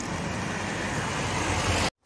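Road traffic: the steady hiss of a passing vehicle growing slowly louder, then cutting off suddenly near the end.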